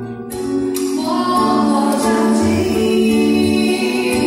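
A woman singing into a microphone with a live band behind her, acoustic guitar among the instruments. After a brief lull at the very start, she sings long held notes.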